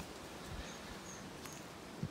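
Faint outdoor background noise with three brief, high chirps spread through the middle.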